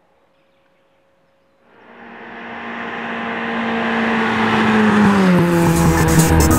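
A classic car's engine approaches at a steady, even pitch. It gets louder, then drops in pitch as it passes by near the end.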